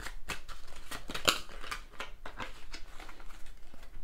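A deck of oracle cards shuffled by hand: a quick, irregular run of card flicks and snaps.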